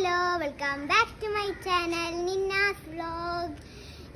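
A young girl singing a short tune in a high child's voice, in several phrases with a long held note in the middle.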